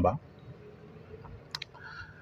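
A man's voice trailing off, then a pause of low room tone with a couple of faint short clicks about one and a half seconds in.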